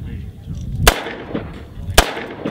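Two handgun shots about a second apart, each a sharp crack with a short echo after it, the second one the louder; pretty blasty.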